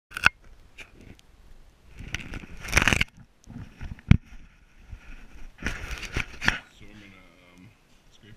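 Handling noise from a camera being picked up and positioned: scrapes and rustles of cloth, with sharp clicks and a single loud knock about four seconds in. A man's low voice starts near the end.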